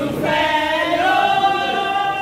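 A group of women singing together in chorus, holding long sustained notes.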